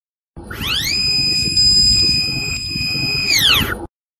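Intro logo sound effect: an electronic tone that glides up, holds steady, then glides back down and cuts off suddenly just before the end, over a low rumble.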